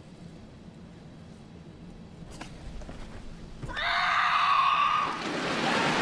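A karateka's kiai: a loud, held shout of about a second, marking the last technique of the kata. A single sharp snap comes a little past two seconds in. Just after the shout, applause from the crowd swells up.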